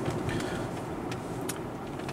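Steady road and engine noise inside a moving car's cabin, with a few light clicks.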